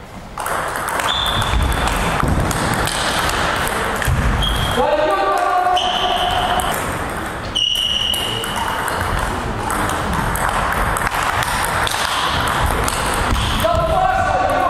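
Table tennis rallies: celluloid balls clicking off bats and tables at several tables at once, with voices in the hall.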